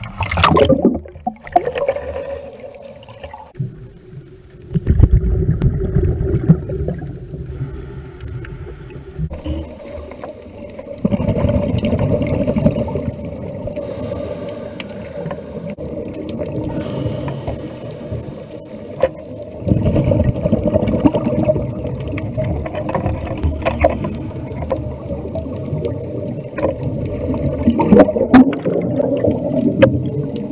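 Underwater sound as a scuba dive begins: a splash as the camera goes under at the start, then long stretches of low rumbling bubbles from a diver's regulator exhaust, with fainter hissing gaps between breaths.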